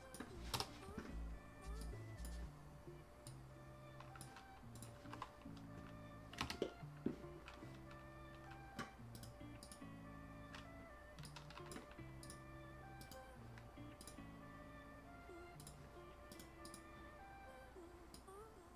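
Quiet background music of soft, sustained chords changing every second or so, with scattered clicks of a computer mouse and keyboard, one sharper click about seven seconds in.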